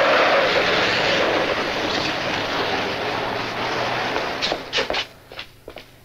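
A car pulling away, a loud, even engine and road noise that fades out over about four seconds. Near the end come a few light knocks.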